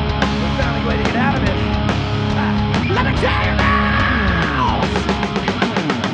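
Live rock band playing: electric guitar bending notes, with one long held note in the middle, over bass guitar and drum kit, with a drum fill near the end.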